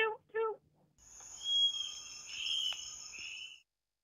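A high, whistled, bird-like call lasting about two and a half seconds, given for the black-spotted bare-eye, its pitch wavering a little. A short click falls near the middle of it.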